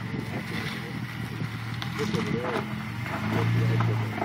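Jeep Wrangler Rubicon's engine running at low revs as it crawls up onto a boulder, its low steady note growing louder about three seconds in as throttle is fed in.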